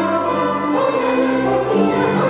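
Mixed student choir singing held notes in parts, accompanied by violins; a deeper part comes in a little under a second in.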